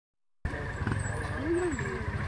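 Montesa Cota 4RT trials motorcycle's four-stroke single-cylinder engine idling steadily, starting suddenly about half a second in, with spectators' voices.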